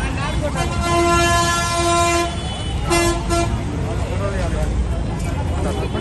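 A vehicle horn honking: one long blast of about a second and a half, then two short toots about a second later, over voices and street noise.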